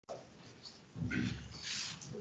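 A short, faint breathy human sound close to the microphone, starting about a second in, over low room hiss.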